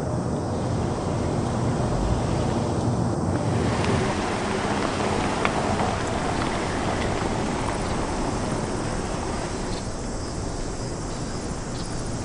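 A car driving slowly up a paved driveway: a steady rush of engine and tyre noise that eases slightly toward the end.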